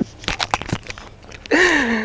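A few scattered sharp clicks and crackles in the first second, then a person's voice starting a drawn-out falling "ah" near the end.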